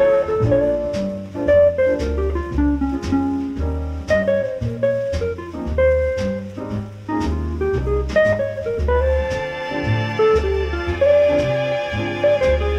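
Jazz orchestra recording: a walking bass line at about two notes a second under a drum kit, with a melodic line on top.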